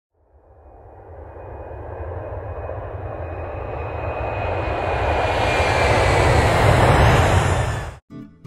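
Jet airliner flying past: engine noise swelling steadily louder, with a faint whine sliding slowly down in pitch, then cutting off suddenly at the end.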